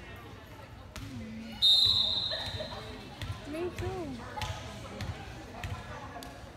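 A referee's whistle gives one short steady blast about a second and a half in, the signal for the serve. A ball thuds on the gym floor a few times, and voices carry in the hall.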